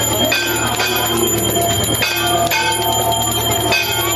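Temple bells ringing continuously for the aarti: repeated strikes whose long ringing tones overlap, over a steady low hum.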